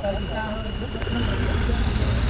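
Off-road race car's engine running with a steady low rumble that grows a little louder toward the end.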